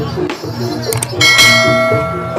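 A subscribe-button sound effect: a short click about a second in, then a bright bell chime that rings out and fades. This plays over ongoing Javanese jaranan gamelan music with a repeating pitched pattern.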